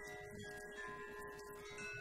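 Quiet music with chime- or bell-like notes ringing one after another over a long held note.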